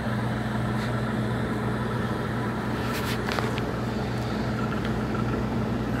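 Steady low hum of packaged rooftop HVAC units running, over a constant machine drone, with a couple of faint clicks about three seconds in.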